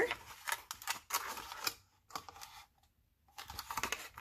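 Embossed plastic vacuum-sealer bag crinkling and rustling as it is handled, in short irregular crackles with a brief silent gap about halfway through.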